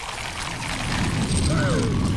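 Cartoon sound effect of a huge billowing mass rushing in, a rumbling noise that swells louder, with a brief startled vocal sound about a second and a half in.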